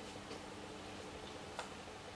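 Quiet room tone with a faint steady hum and two faint clicks, the sharper one about a second and a half in.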